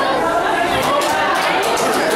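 Many people's voices chattering at once, overlapping with no single clear speaker.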